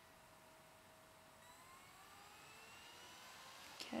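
Faint whine of a computer's DVD drive spinning up a newly inserted disc: several thin tones rising slowly in pitch as the disc gets up to speed. A short click near the end.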